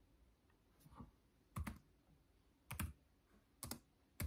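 Computer keyboard keys pressed a few times: four separate clicks about a second apart, the first faint, the others quick double ticks.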